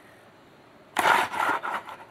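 Near quiet, then about a second in a sudden rough scraping noise lasting about a second, as the heavy magnetic roller on the magnet ring is handled.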